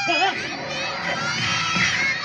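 A crowd of young children shouting together, many high voices overlapping.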